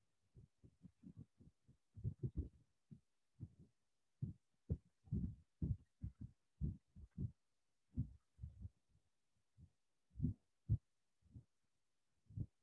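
Faint, irregular low thumps, several a second and unevenly spaced, picked up by a microphone as handling or rubbing noise.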